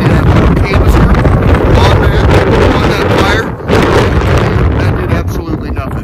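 Wind buffeting the microphone: a loud, gusty low rumble that largely covers a man's voice.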